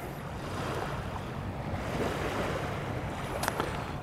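Lake Huron's small waves washing on a sandy beach, a steady rush with wind on the microphone; a faint click near the end.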